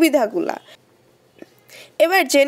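A woman's voice narrating for the first moment, then a quiet pause with a single faint click about halfway through.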